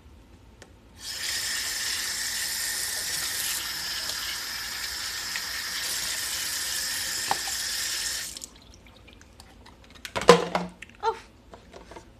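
Kitchen faucet running full onto a blender lid held in the sink, a steady rush of water that starts abruptly about a second in and stops about seven seconds later. A few sharp knocks and handling sounds follow near the end.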